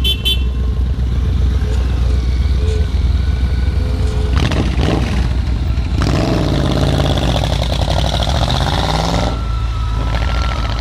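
Motorcycle engines running in a group, a steady low rumble throughout, with two short horn toots right at the start. About four seconds in, and again for about three seconds from six seconds in, motorcycles rev close by and ride off, their engine pitch rising and falling, before dropping back to idle rumble.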